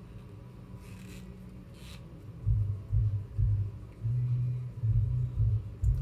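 Two brief soft scrapes as the cap and doe-foot wand are drawn out of a small plastic lip-oil tube. From about halfway through, irregular low rumbling thumps follow and are the loudest sound.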